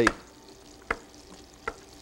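A knife cutting boiled potatoes in half, striking the cutting board twice with short sharp taps, over a faint sizzle from a frying pan.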